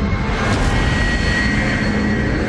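Intro sound effect under a studio title card: a loud, steady rumbling roar with a faint high whistle held through it.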